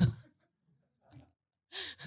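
A laugh trailing off, then a pause of near silence, then a quick intake of breath near the end, just before speaking.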